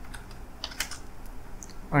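Computer keyboard typing: a few scattered keystroke clicks.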